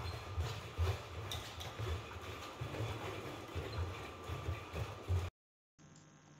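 ANYmal C quadruped robot walking, its feet thudding on the floor in an uneven run of dull footfalls, roughly three a second. The footfalls cut off abruptly a little after five seconds in.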